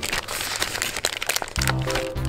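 Background music, with a plastic soft-bait bag crinkling for the first second and a half as worms are pulled out of it.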